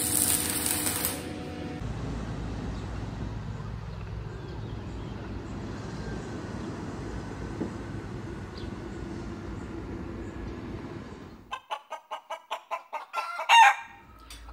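A MIG welding arc crackles for about a second, then a steady low background noise follows. Near the end, chickens cluck in a quick run of calls, ending in one loud squawk.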